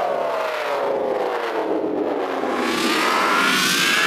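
Dark psytrance breakdown with the kick drum gone: a synth tone sweeping slowly downward for the first half, then a rising synth sweep over a wash of filtered noise.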